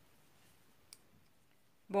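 Very quiet handwork with a single faint click about a second in: a crochet hook working single crochet around an acrylic ring.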